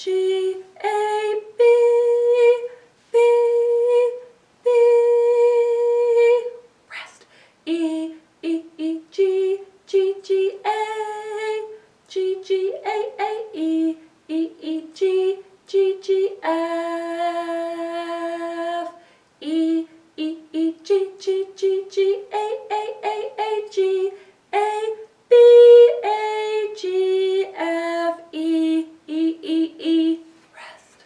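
A woman sings the letter names of a recorder melody without accompaniment, one syllable per note in a single slow line. She holds one long note for about two and a half seconds a little past the middle.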